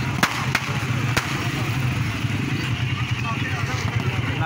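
Firecrackers going off over a noisy, chattering crowd, with three sharp cracks in the first second or so and a steady low rumble underneath.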